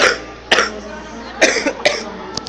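A person coughing into a hand: four short, sharp coughs, unevenly spaced.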